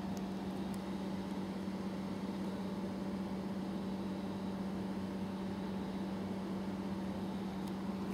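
A steady low hum over a faint even hiss, unchanging throughout, with no distinct events.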